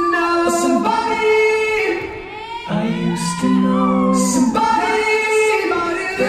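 A cappella choir singing sustained chords in layered harmony, with a short lull a little past two seconds before a lower, fuller chord comes in.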